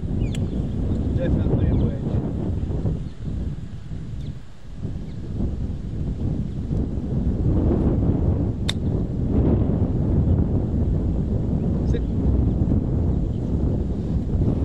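Wind buffeting the microphone in gusts, with one crisp click of a golf club striking the ball on a short chip shot about nine seconds in.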